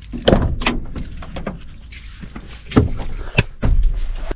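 Bunch of keys jangling and a key worked in the cab door lock of a Mercedes Atego lorry, with sharp clicks from the lock and handle. Then several heavier knocks and thumps as the cab door is opened and someone climbs in.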